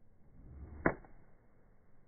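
A golf club striking a golf ball: one sharp click just under a second in, with a brief low rush of the downswing leading into it.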